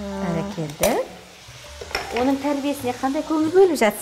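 Chopped onions frying in a non-stick pan, a steady sizzle, with a spoon stirring and tapping as seasoning goes in. A woman's voice is heard over it in the first second and again from about halfway through.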